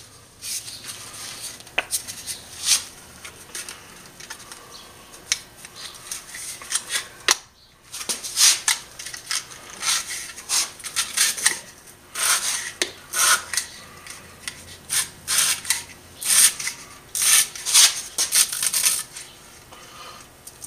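Stiff slot-insulation paper being pushed into the slots of a stripped electric motor stator: irregular short papery scrapes and rubs as each sheet drags through the steel slot. The strokes are sparse at first, pause briefly, then come thick and fast through the second half.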